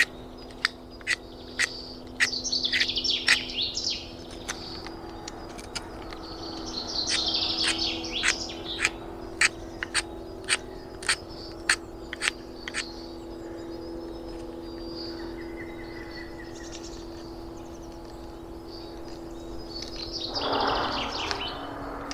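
A Fiskars utility knife carving shavings off a stick of fresh wood. Each stroke makes a short, sharp click, about two a second for the first dozen seconds, then the strokes stop.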